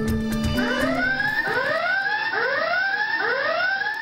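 Electronic whooping alarm: a rising swoop repeated about two times a second, starting about half a second in, over background music.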